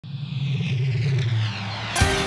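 A low engine-like drone that sinks slowly in pitch, with a higher tone sliding down over it.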